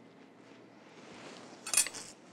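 Quiet kitchen room tone, then one brief clink of a metal serving spoon near the end as coleslaw is set on a sandwich.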